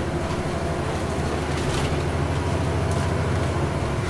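Inside a moving 2009 NABI 416.15 transit bus: its rear-mounted Caterpillar C13 diesel engine drones steadily, with road and body noise.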